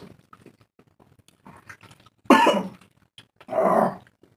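Faint wet clicks of hand-eating, then two short, loud vocal bursts from a person about a second apart, cough-like.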